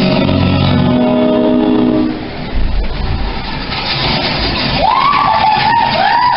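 Dance music played over a theatre sound system stops about two seconds in, giving way to a low rumble and then an engine-revving sound effect, a whine that rises and wavers near the end.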